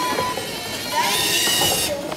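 A tracked LEGO Mindstorms robot's electric drive motors whining as it drives and turns. The whine starts abruptly about a second in and cuts off just before the end, over murmuring voices in a hall.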